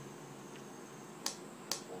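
Two sharp clicks about half a second apart, over a steady background hum.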